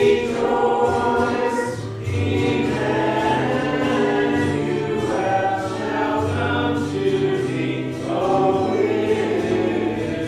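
A church congregation singing a hymn, with sustained notes that change about once a second.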